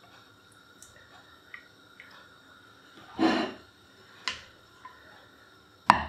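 Quiet handling sounds of metal utensils lifting braised meat out of a slow cooker's pot onto a plate: a few faint ticks, a couple of short scrapes about three and four seconds in, and a sharp click just before the end.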